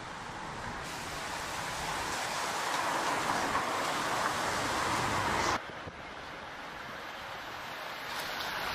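A pack of racing bicycles sweeping past: a rush of tyre and wind noise that builds, cuts off abruptly about five and a half seconds in, and goes on more quietly.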